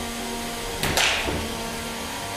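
3 lb combat robots running in the arena: a steady pitched whine under two sharp, whip-like cracks close together about a second in.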